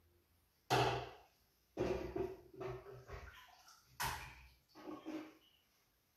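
A plastic measuring pitcher scooping liquid out of a stainless steel stockpot: about five short knocks and sloshes, each starting sharply and fading quickly.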